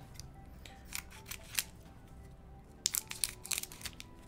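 Light clicks and snaps of trading cards and packaging being handled at a desk: a few scattered ones, then a quick cluster about three seconds in. Faint background music plays under them.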